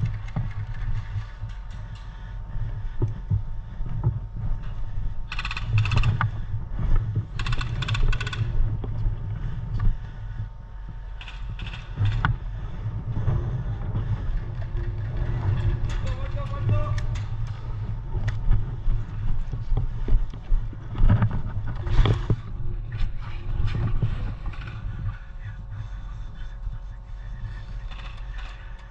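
Steady low rumble of wind and movement on the microphone, with faint voices and scattered sharp clicks. Two short rapid strings of clicks come about six and eight seconds in.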